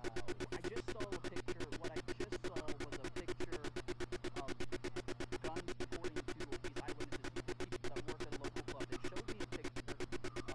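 An electronic pulsing tone, about seven even pulses a second, over a steady low hum, running unchanged.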